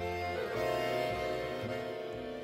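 Live string ensemble (violins, viola, cello and double bass) playing a tango, with long bowed notes held and a change of chord about half a second in.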